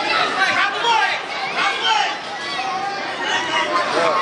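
Spectators and coaches shouting over one another, many voices at once with no single clear speaker, urging on the wrestlers in a youth wrestling bout.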